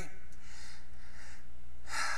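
A man breathing into a close microphone in a pause between phrases: a soft breath, then a sharp intake of breath near the end. A steady low hum runs underneath.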